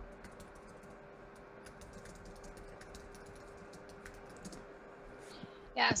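Faint typing on a computer keyboard: irregular key clicks over a steady hum. A voice starts speaking right at the end.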